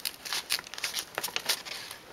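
A sheet of paper being folded and creased by hand, giving short, irregular rustles and crackles.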